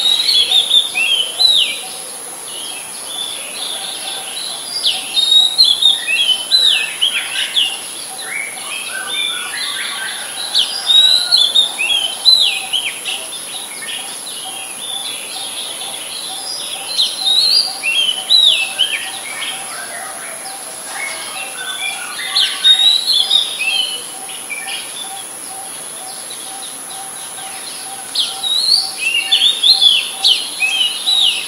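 Oriental magpie robin singing: bouts of varied, gliding notes a few seconds long, broken by pauses of a few seconds.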